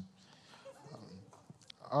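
A man speaking through a microphone: a soft 'um', then a drawn-out 'all right' that falls in pitch near the end, over a faint room murmur.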